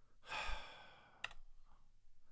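A man's breathy sigh, a short exhale, followed about a second later by a single click of a computer keyboard key.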